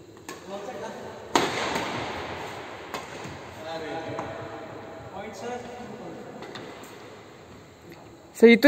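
Badminton rackets striking a shuttlecock during a rally: a handful of sharp cracks a second or more apart, the loudest about a second in, each ringing out in a large echoing hall.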